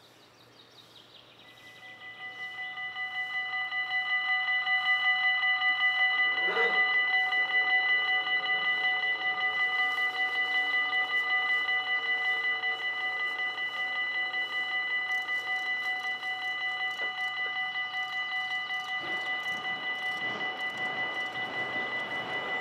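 Level crossing warning bells start about two seconds in and grow louder over the next couple of seconds into a rapid, steady ringing. They keep ringing as the barriers come down, warning of an approaching train.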